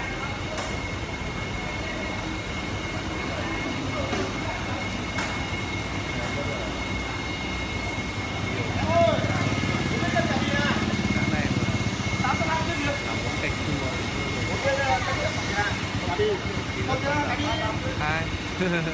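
Air hoses bubbling water hard in live-fish holding tubs, a steady churning that keeps the fish oxygenated. A thin, steady high whine runs under it, and a deeper hum builds from about halfway.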